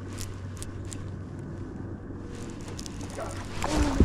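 A bass swirls at a glide bait at the surface near the end, a sudden splash that swells quickly. Before it there is only a low steady hum and a few light clicks.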